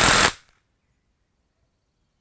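Short burst from a cordless impact wrench run in free air with no load. It cuts off suddenly about half a second in.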